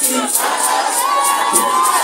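Crowd of women cheering and calling out during a song break, one high voice holding a long cry for about a second and a half, rising slightly near its end.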